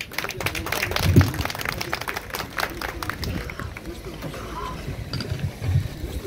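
Audience applauding: a dense patter of claps that thins out after about three seconds, with a few voices mixed in.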